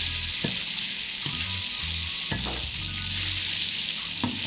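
Linguine being tossed and folded with metal tongs in hot brown butter in an All-Clad D3 stainless-steel fry pan. The butter sizzles steadily, and the tongs click against the pan a few times.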